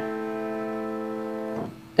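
A three-note piano chord, the minor triad just shown for comparison, held steady and then released about a second and a half in.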